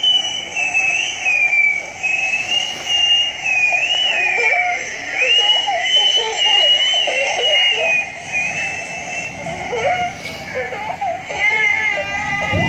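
Cartoon soundtrack from a tablet speaker: a high, wavering squeal held almost without break, with lower chattering voice-like sounds underneath.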